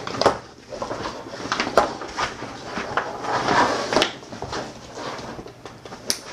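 Stiff waterproof coated fabric of a roll-top dry bag rustling and crinkling as it is handled and its top folded down by hand, with a few sharp snaps along the way.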